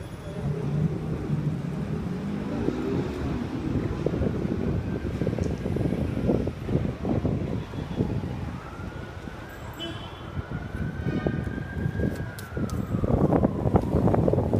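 City street traffic rumbling, with a siren wailing faintly over it from about four seconds in, its pitch rising and falling slowly every few seconds.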